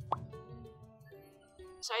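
Quiet background music with held notes, and just after the start a short rising pop sound effect, as used when a graphic pops onto the screen. A woman's voice begins right at the end.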